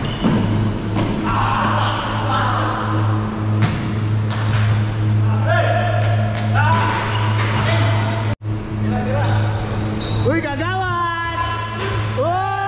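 A basketball bouncing and thudding on an indoor hardwood-style court during a pickup game, with sharp knocks, short high squeaks and players shouting, mostly in the middle and near the end. A steady low hum runs underneath throughout.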